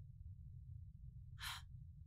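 Quiet low hum, broken about one and a half seconds in by a single short, breathy gasp.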